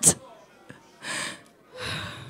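Two breaths taken close into a handheld microphone between spoken phrases, about a second apart.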